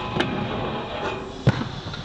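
Aggressive inline skates grinding down a metal handrail. A sharp clack comes just after the start and a scraping grind follows. About a second and a half in comes the loudest thud, the skater landing at the foot of the rail.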